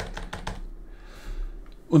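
A quick run of clicks from a computer keyboard, several keystrokes within about half a second at the start.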